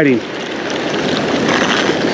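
Steady hiss of surf washing on the beach, with wind on the microphone.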